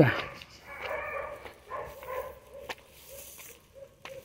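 Dogs barking faintly in the distance, a scattering of short calls, with one sharp click about two-thirds of the way through.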